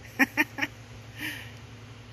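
A person's short laugh: three quick 'ha' pulses in the first second.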